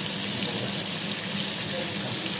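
Oil sizzling steadily in a frying pan, an even hiss, with a faint low hum under it.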